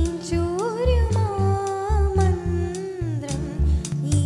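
A young woman singing solo into a microphone over instrumental accompaniment with a steady low beat. She holds long, ornamented notes that waver and slide, gliding down in pitch about three seconds in.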